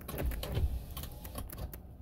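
A run of light, irregular clicks and taps over a low rumble.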